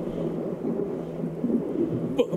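Low, steady rumbling ambience with a constant low hum beneath it, from a horror web series' soundtrack.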